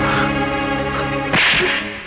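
A held, steady low musical chord, then a sharp whoosh sound effect about one and a half seconds in, the swish of a punch in a film fight scene.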